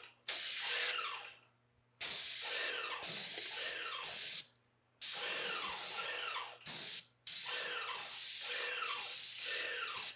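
Graco Magnum X7 airless paint sprayer's gun hissing as it sprays paint, in a series of short bursts of about a second or two, starting and stopping sharply as the trigger is pulled and released.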